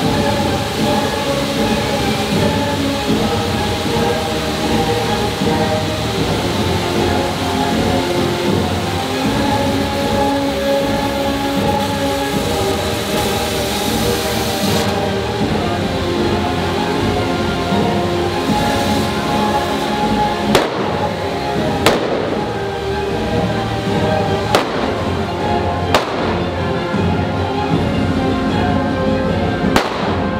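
Music playing throughout. In the last third it is joined by about five sharp firecracker bangs, a second or two apart, from the fire-beast troupe's fireworks.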